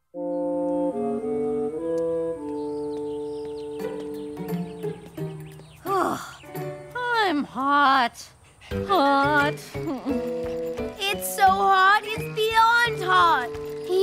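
Cartoon underscore music: held chords begin just after a moment of silence, and from about six seconds in quick swooping up-and-down tones play over them.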